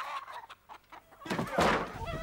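A chicken squawking once, harsh and loud, about a second and a half in, after a short quiet stretch.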